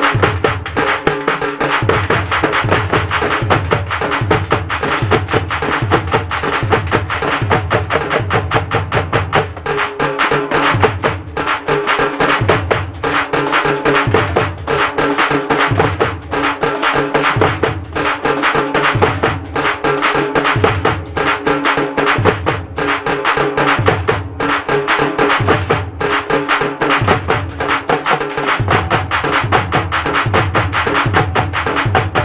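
A troupe of dappu frame drums struck with sticks in a fast, steady, driving rhythm, with a deeper drum pulsing regularly underneath.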